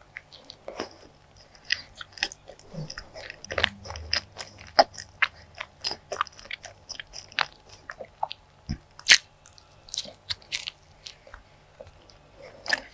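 Close-miked chewing of a soft custard bun dipped in Nutella, with many short, irregular mouth clicks.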